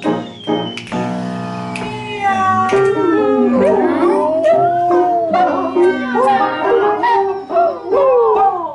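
A singer's wordless vocalising in long swooping slides up and down in pitch, over a held chord from an accompanying instrument. The chord sounds alone for about the first two seconds before the voice comes in.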